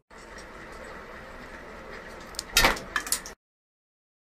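Faint room hiss, then, a little over halfway in, a sharp crack as a pistachio shell is pressed open between the fingertips, followed by a couple of smaller clicks. The sound cuts off suddenly soon after.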